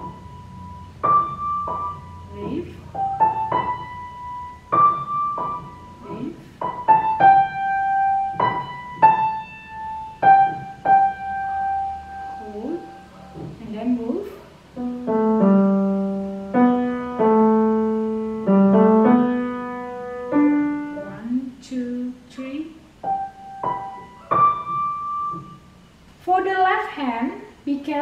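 Piano played slowly, note by note: a melody of single notes in the middle-upper range, then, from about halfway through, lower notes sounding in pairs.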